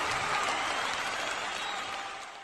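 Audience applauding, a dense even clapping that slowly weakens and fades out near the end.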